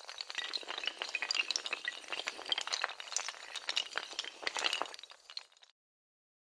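Sound effect of toppling dominoes: a fast, dense cascade of hard clicking and clinking tiles that stops suddenly near the end.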